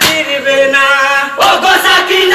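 Group of voices singing a Bengali Muharram mourning song (matom jari) together, holding a long note and then starting a new phrase about one and a half seconds in.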